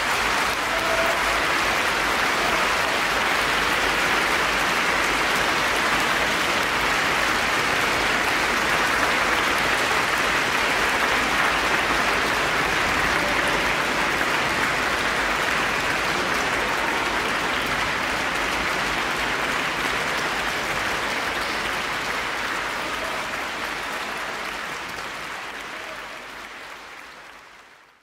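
Concert audience applauding, a long steady round of clapping that fades out over the last few seconds.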